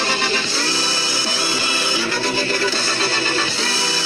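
Music with guitar, playing steadily.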